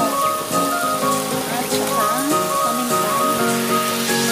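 Sliced mushrooms and onions sizzling as they fry in a pan, a steady hiss with background music playing over it.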